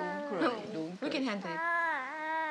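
A woman cooing to a baby in drawn-out, sing-song baby talk without clear words, her voice sliding up and down in long held notes.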